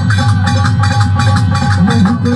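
Harmonium and dholak drums playing an instrumental passage of qawwali music. The drums keep a quick, steady rhythm under the harmonium's held notes.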